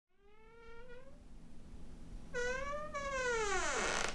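A high, whining cry, three times: a long call rising slowly in pitch, a short rising one, then the loudest, falling steeply in pitch near the end.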